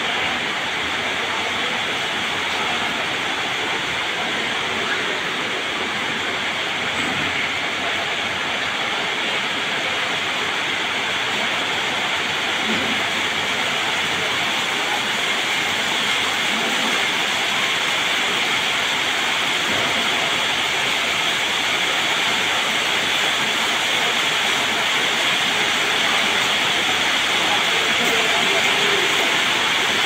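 Steady, even rushing noise that grows slightly louder toward the end, with no single machine, motor whine or knock standing out: the general background din of a working warehouse.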